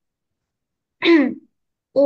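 A person clearing their throat once: a single short, loud burst with a falling pitch about a second in.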